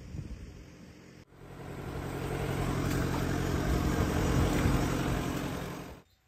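A vehicle engine running steadily. It comes in after a short cut about a second in and swells louder over the next couple of seconds.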